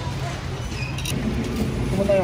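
Steady low rumble and hum of a large warehouse store's background noise, with a brief light clatter about a second in.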